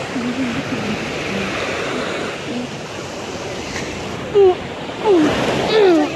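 Small waves of the Gulf of Mexico breaking and washing up onto a sandy beach: a steady rush of surf. A voice cuts in briefly near the end.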